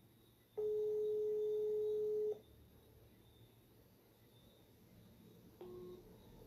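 Telephone ringback tone of an outgoing call going unanswered: one steady tone held for nearly two seconds, then a short, lower beep near the end.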